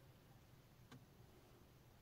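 Near silence: quiet car-cabin room tone with one faint short click about a second in.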